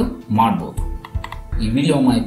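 A voice talking over background music, with clicks like computer keys or a mouse being pressed.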